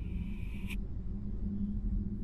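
A REM pod's alarm tone sounding steadily, then cutting off suddenly under a second in, over a low steady hum.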